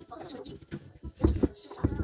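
Knife cutting through citrus fruit onto a wooden cutting board, giving a few dull knocks with the loudest in the second half.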